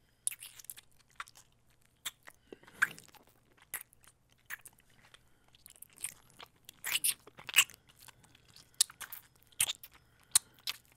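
Wet mouth sounds close to the microphone: irregular kissing and licking smacks and clicks, with a cluster of louder ones about seven to eight seconds in.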